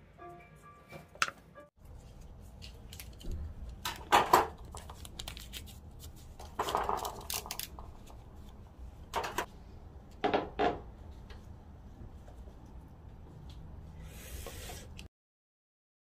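Scattered sharp clicks and scrapes of gloved hands working a utility knife and a potted geranium, over a low steady hum. Faint music plays for the first couple of seconds, and the sound cuts off abruptly about a second before the end.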